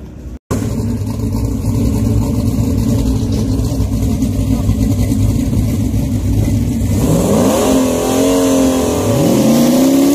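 High-powered drag race car engines idling loudly at the starting line; from about seven seconds in, an engine revs up and down repeatedly as a tyre-spinning burnout begins.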